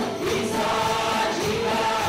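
Live worship band playing a praise song, with several voices singing together in long held notes. There is a short break between phrases just at the start.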